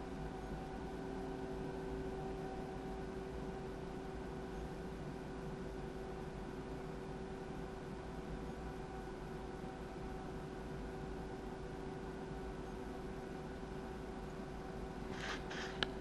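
Faint steady electrical hum with a few unchanging tones from the car-amplifier test bench during a 1-ohm dyno power run, the amplifier driving a test tone into a dummy load rather than a speaker.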